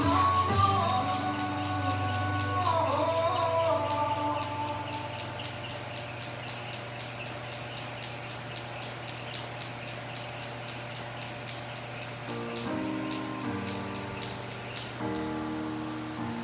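Pop music with singing playing in the background, over a jump rope whipping and ticking against a rubber floor in a quick even rhythm of about four strokes a second, the rhythm of double unders, which stops near the end.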